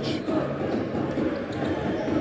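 A basketball bouncing on a hardwood court, over the steady noise of a packed crowd in an indoor sports hall.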